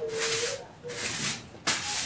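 A pair of compasses fitted with a ballpoint pen scraping and rubbing on paper in about three short strokes.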